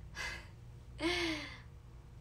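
A woman takes a quick breath in, then lets out a voiced sigh whose pitch falls away. It is an emotional pause right after she says how painful the situation has been for her.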